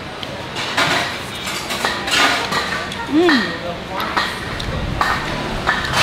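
Occasional light clinks of chopsticks and tableware against bowls and dishes while eating, with a woman's short 'mm' of appreciation about three seconds in.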